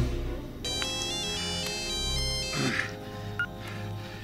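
Cell phone's electronic ringtone playing a short melody of stepped beeping notes, starting about half a second in and stopping after about two seconds, over a low steady film-score drone.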